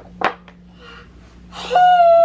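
A light wooden click about a quarter second in as a chunky wooden puzzle piece is pressed into its board, then near the end a toddler's high voice starts, one long held note.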